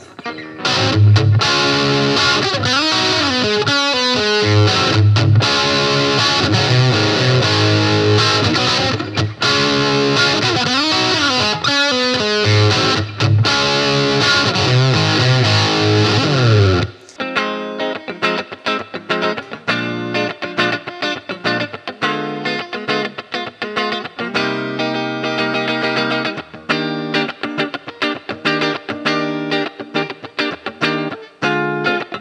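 Electric guitar with two humbuckers, a solid mahogany back and maple top, stop tailpiece and tune-o-matic bridge, played through an amp. Dense, sustained chords and riffs for about the first seventeen seconds, then a sudden switch to short, choppy picked notes with much less bass.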